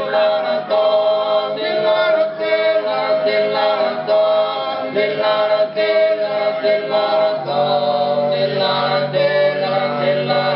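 Sardinian cuncordu: four men singing a cappella in close harmony, holding long chords. About seven and a half seconds in, the harmony shifts, with fuller, lower voices coming in beneath.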